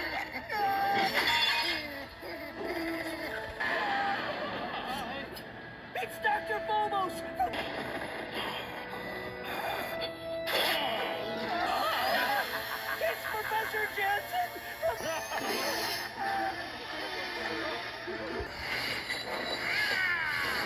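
A cartoon soundtrack playing through a television speaker: music under character voices and sound effects, with a sudden crash about ten seconds in.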